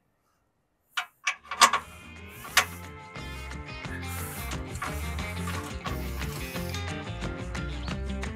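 Background music that starts about a second in with a few sharp hits, then runs on with a steady bass line under it.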